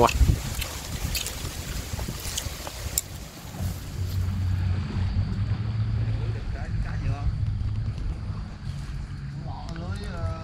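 Outdoor ambience in two parts: a few seconds of scattered clicks and handling noise, then a steady low rumble with faint distant voices.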